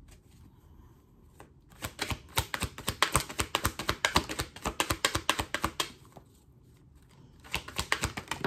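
A tarot deck shuffled by hand: a quick run of light card clicks and flicks for about four seconds, starting a couple of seconds in, then a shorter burst near the end.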